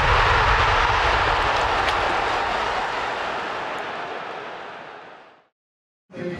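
Intro sound effect: a long, noisy whoosh that starts loud and fades out steadily over about five seconds.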